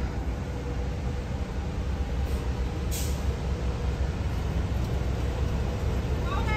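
City street traffic: a steady low rumble of engines, with two short high hisses a little after two and three seconds in.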